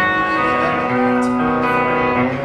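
Live rock band playing loudly: electric guitars and drums under long held lead notes, with cymbal hits a little past a second in.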